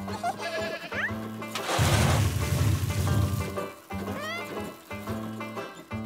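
Cartoon soundtrack music, broken about two seconds in by a loud crashing rumble that lasts about a second and a half. Short rising vocal glides come near the first second and again about four seconds in.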